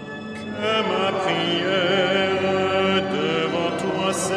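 Liturgical chant of the evening office, sung by voices over steady held low notes; the singing swells about half a second in.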